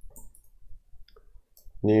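Computer keyboard keys clicking, a few sparse keystrokes while code is typed; a man starts speaking near the end.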